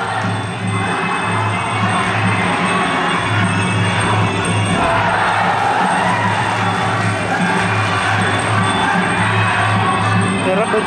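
Ringside fight music with a steady pulsing drum beat over a loud arena crowd. The crowd noise swells about five seconds in, as one fighter goes down to the canvas.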